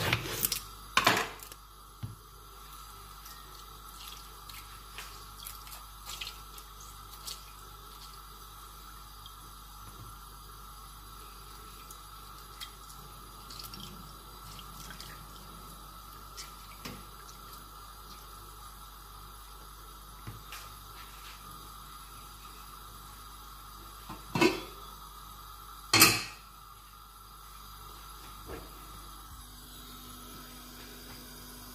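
Lemons being cut on a wooden board and squeezed by hand into a ceramic bowl: small clicks and the drip of juice, with one louder knock about a second in and two sharp knocks near the end.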